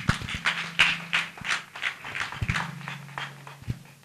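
Audience clapping after a speech, a quick patter of claps that thins out and fades over about three and a half seconds.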